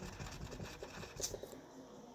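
A Crayola wax crayon scribbled back and forth on paper, filling in a small colour swatch: faint, quick scratchy strokes that die away about one and a half seconds in.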